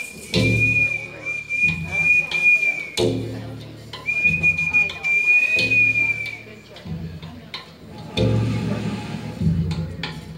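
Native American style flute playing two long, steady, high held notes: the first runs to about three seconds in, and the second lasts from about four to six and a half seconds. Lower sounds come and go beneath them.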